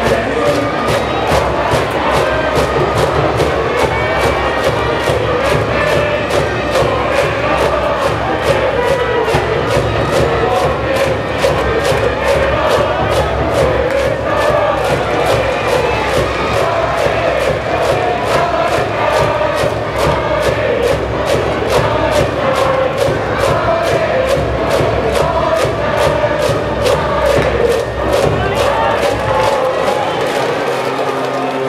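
High school baseball cheering section: a brass band playing a cheer song over a steady, even drumbeat while a crowd of students chants along in unison.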